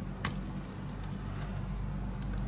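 Light clicks and metallic taps from a metal craft tool handled against cardstock, two sharper clicks standing out, over a steady low hum.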